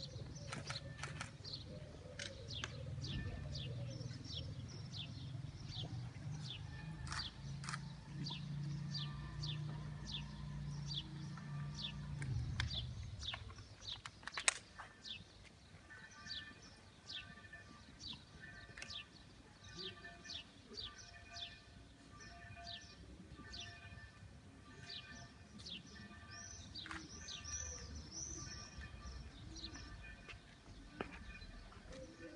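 Small birds chirping over and over in short, quick descending calls, over a silent outdoor crowd. A low rumble runs through the first dozen seconds, and there is one sharp click about halfway through.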